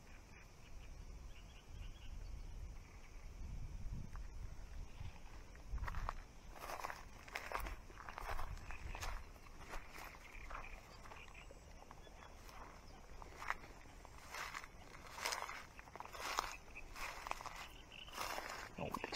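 Footsteps through dry grass and reeds at the water's edge, with reed stems and leaves brushing and rustling as the walker pushes through: irregular short rustles through the second two-thirds. A low rumble fills the first few seconds.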